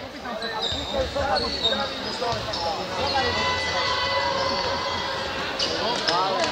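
A basketball being bounced on the court by a free-throw shooter between his two attempts, over the chatter of many voices in the hall.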